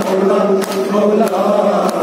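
Kashmiri noha, a Muharram lament, chanted by a group of men through a microphone in long held notes. Sharp slaps recur about every 0.6 s in time with it, the rhythmic chest-beating (matam) of the mourners.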